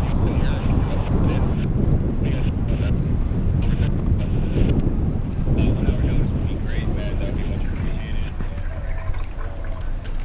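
Steady deep rumble of a large Great Lakes bulk freighter passing close by, mixed with wind on the microphone, with people's voices in the background.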